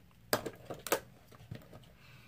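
A few light clicks and taps of small makeup items being handled and picked up: three sharp clicks about half a second apart, with fainter taps between.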